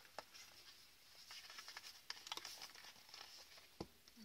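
Faint rustling and light taps of cardstock being handled and folded closed, with one sharper tap near the end.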